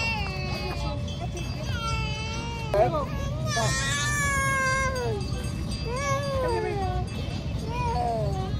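A toddler's high-pitched vocalizing: drawn-out squeals and whines that slide up and down in pitch, the loudest and longest about three and a half to five seconds in, over a steady low hum.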